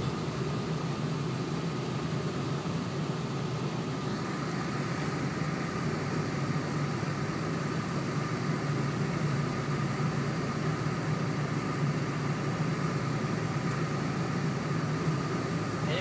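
Steady in-cab running noise of a 2007 four-wheel-drive Dodge truck driving on a snow-covered road: engine and tyre noise with a constant low drone.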